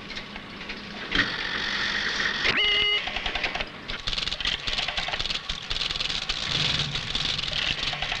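A rotary telephone being dialled, with the dense mechanical clicking and clatter of electromechanical telephone exchange selectors and relays stepping as the call is switched through, and a short tone about three seconds in.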